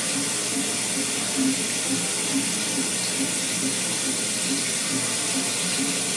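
Shower water running in a steady hiss, with a faint low pulse repeating about twice a second.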